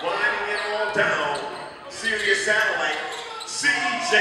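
Basketball game sounds on an indoor hardwood court: a ball bouncing, mixed with players' and spectators' shouts.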